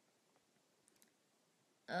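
Near silence with a few faint, short clicks, the clearest about a second in; a woman's voice starts just before the end.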